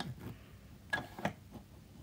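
Ink pen drawing short strokes on paper: a few brief, scratchy ticks with quiet between them, as small squares are inked.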